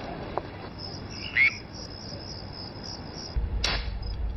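Steady high insect trilling with one short, loud chirp about a second and a half in. Near the end a low rumble starts and a single sharp click follows.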